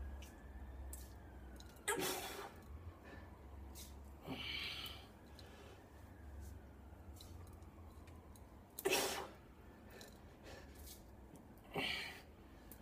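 A man's short, forceful breaths, four of them a few seconds apart, as he lifts through barbell curl reps.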